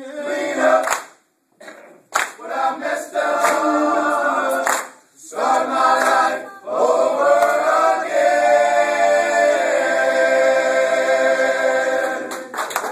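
A group of people singing together without instruments. There is a short break about a second in and another near the middle, and the song ends on a long held chord over the last few seconds.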